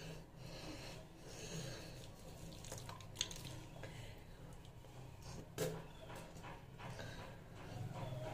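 Faint wet rubbing of lathered hands over the face, with breathing through the nose and mouth, and two brief sharp sounds about three and five and a half seconds in.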